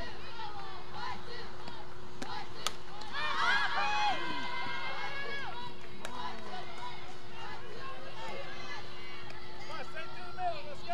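Softball players' chatter and chanted cheers, high-pitched voices calling out in overlapping shouts, loudest in a burst of held chant about three to five seconds in. A single sharp pop comes just before the chant.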